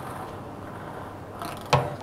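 Quiet, steady mechanical noise from a lottery ball-draw machine, with one sharp knock near the end.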